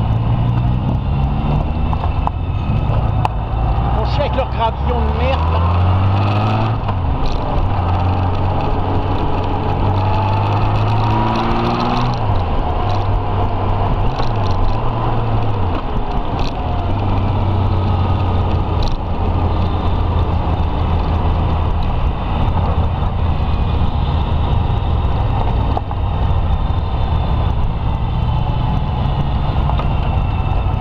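Touring motorcycle engine running at road speed with wind rushing over the bike; the engine note drops and picks up again several times in the first half as the rider changes speed.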